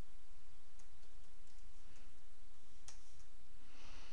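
Computer keyboard keys clicking faintly a few times as text is typed, the clearest keystroke about three seconds in, over a steady low hum.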